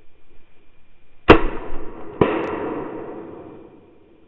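A shotgun fired twice, a little under a second apart, each very loud shot trailing off in a long echo.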